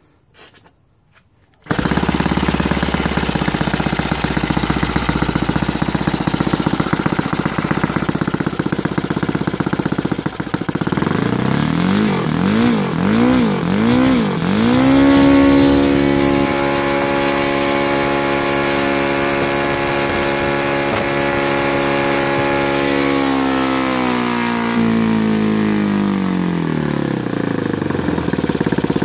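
Saito FG-36 single-cylinder four-stroke gasoline engine on CH CDI ignition, turning an 18x6 propeller on a test stand. After a brief quiet moment it starts running suddenly at low speed, is blipped up and down several times, then held wide open at a steady high pitch of about 8,400 rpm. Near the end it is throttled back and the pitch falls.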